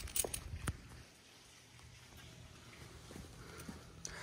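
A few light clicks in the first second as a car's driver door swings open on its hinges and check strap, then only faint background.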